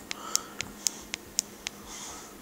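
Small push button on a Defy D3S paintball marker clicking in a quick, even series, about four clicks a second and seven in all, as it is pressed repeatedly to step a programming setting down.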